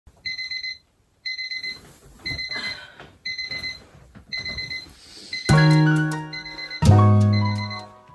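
Electronic alarm beeping in groups of quick high beeps, about one group a second, five times. It stops and, about five and a half seconds in, music comes in with loud sustained chords.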